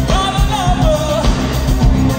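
Live synth-pop song by a band through a concert PA. A male lead singer sings one phrase in the first half over keyboards, guitar and a steady beat. The instruments carry on after the phrase ends.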